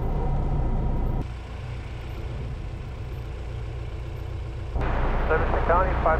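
Light aircraft's engine and propeller running steadily before the takeoff roll, a low droning hum heard from inside the cockpit. The sound drops in level about a second in and comes back louder near the end, when a voice starts.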